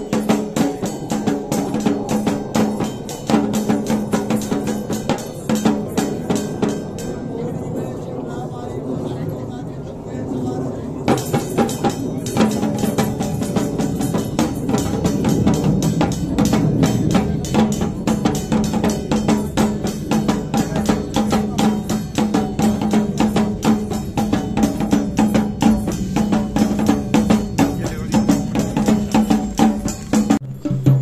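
Fast, steady drumming on a traditional Uttarakhandi dhol, with a steady low drone beneath the beat. The drumming thins and softens briefly about a third of the way in, then picks up again.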